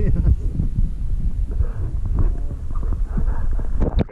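Muffled rumbling with irregular knocks and bumps, picked up by a camera held under the water beneath lake ice, with muffled voices coming through.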